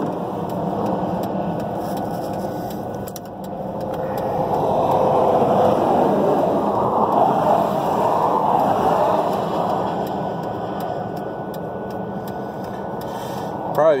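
Road traffic passing by: a steady rushing that swells about five seconds in and eases off again later on.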